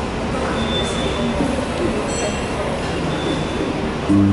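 Steady background noise of a busy open-air public space, with faint voices mixed in and a few brief, faint high-pitched tones.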